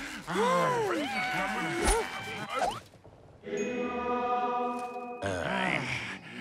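Cartoon voices groaning and moaning without words, with pitch sliding up and down, and a sharp click about two seconds in. Near the middle a short held musical chord sounds for about a second and a half, then the groaning resumes.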